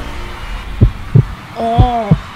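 Heartbeat sound effect: deep double thumps, about one pair a second, with a short pitched, wavering sound laid over the second pair.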